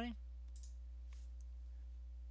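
Steady low electrical hum in the recording, with two faint computer mouse clicks about half a second and a second in as the downloaded installer is opened.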